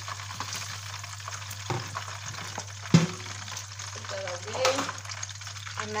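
Hot oil sizzling steadily in a wok as chicken pieces fry, with two sharp knocks from the spatula against the pan, the louder one about three seconds in.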